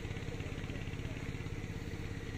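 A motorcycle engine idling steadily, with an even pulsing beat.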